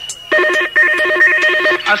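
A telephone-ring sample in a UK garage mix. A brief high steady tone is followed by a fast trilling electronic ring of about a second and a half, with no beat under it.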